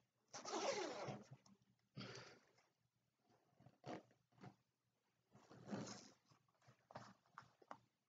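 A zipper on a BAPE shark full-zip hoodie is drawn up in several short runs, closing the hood over the face. The first run, about a second long, is the longest and loudest; smaller zips and clicks follow.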